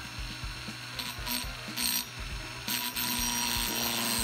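Small rotary tool with a thin cut-off disc grinding into a silicone bronze sprue to cut a casting off its tree. The cutting noise comes and goes in short surges, then runs more steadily with a faint motor whine near the end.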